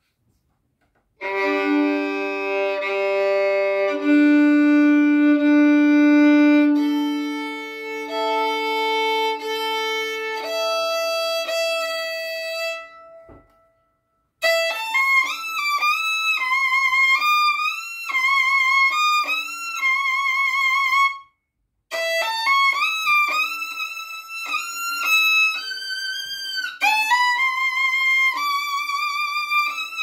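A full-size (4/4) violin being sound-tested. It is first bowed in long held pairs of notes across the open strings, stepping from the lowest strings up to the highest. After a short pause come two melodic phrases in a higher register with vibrato, split by a brief gap.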